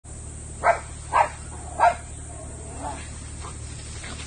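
A small dog barking three sharp times, about half a second apart, then once more faintly, over a steady low rumble.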